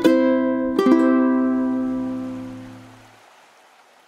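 Closing music on ukulele: two strummed chords, the second about a second in, then the final chord rings and fades out over about two seconds over a held low bass note.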